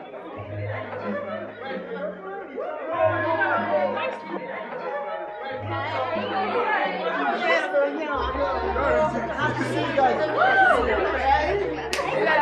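Many voices chattering over one another in a large room, over background music with a repeating bass line; the bass drops lower and grows heavier about eight seconds in.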